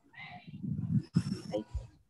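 Indistinct voice and mouth or handling noise picked up over a video-call microphone, with a sharp click about a second in.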